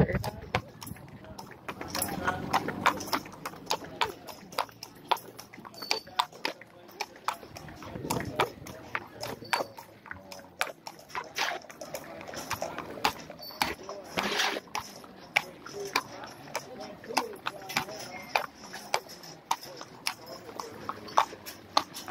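Horse's hooves clip-clopping at a walk on a hard street, a long run of sharp clicks, with voices in the background.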